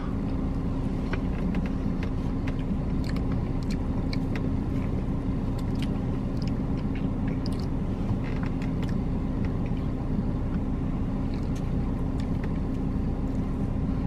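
Steady low hum of a car idling, heard from inside its cabin, with a faint held tone over it. Faint chewing and small scattered clicks of someone eating cake.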